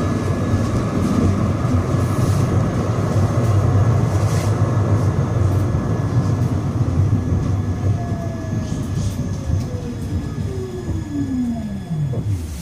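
Siemens Avenio low-floor tram heard from inside the passenger saloon while running, a steady rumble of wheels on rail with a constant faint high whine. In the second half an electric whine from the traction drive glides down in pitch and the rumble fades as the tram slows.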